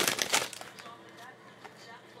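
Foil trading-card pack wrapper crinkling as it is torn open and pulled off the cards, loud and brief in the first half-second, then fading to faint sounds.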